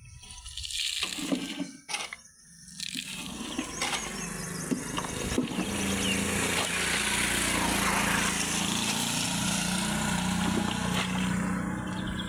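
Rain falling steadily: a constant rushing hiss of water that sets in about three seconds in, after a few scattered knocks.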